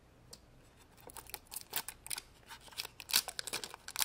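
Irregular small clicks and rattles of hard plastic toys and a plastic capsule knocking against each other and against water beads as hands handle them, starting about a second in and growing busier, loudest a little past three seconds in.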